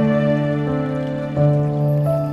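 Slow, soft piano music: held notes over a sustained low bass note, with a new note or chord entering about every two-thirds of a second.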